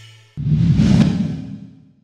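Logo sting for an animated title card: a whoosh with a deep boom that starts suddenly about a third of a second in, swells and then fades out.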